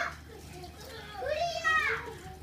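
A young child's voice giving a long, wordless high-pitched call in the second half, arching up and then down in pitch.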